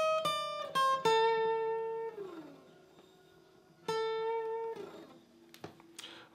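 Epiphone Masterbilt acoustic guitar played one note at a time: a quick run of picked notes, then a held note that slides down in pitch, the reverse slide ending the lick. After a short pause, one more held note is picked and again slides down.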